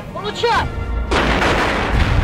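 A large explosion, as from a shell blast. A deep rumble starts about half a second in, a loud crash of noise hits about a second in, and it rolls on as a low rumble.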